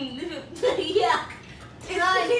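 Indistinct voices: a child and a woman talking, with a quieter pause in the second half.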